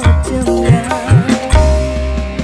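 Banyuwangi kendang kempul band music: kendang hand-drum strokes with bending bass tones, roughly two or three a second, over guitar, bass and keyboard, giving way to a held bass note about one and a half seconds in.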